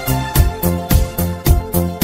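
Instrumental Italo disco music played on synthesizer keyboards: a steady dance beat of about four strokes a second over synth bass and chords, the bass moving to a new note about half a second in.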